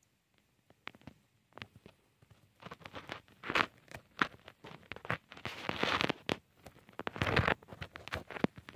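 Rustling and scraping close to the microphone, with scattered light clicks at first and louder bursts of noise from about two and a half seconds in.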